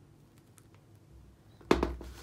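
Hard plastic football helmet shell knocking down onto a wooden floor: one sudden clattering knock near the end, after faint handling sounds.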